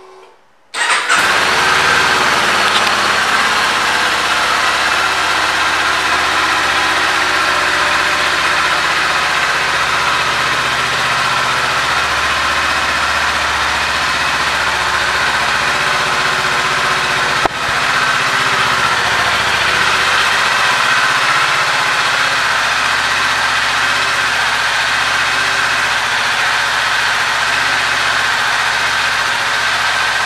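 A 2022 Kawasaki Z400's parallel-twin engine starts about a second in, catching at once, then idles steadily.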